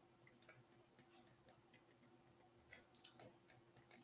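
Near silence with faint, irregular clicks from a computer mouse, coming a little more often near the end.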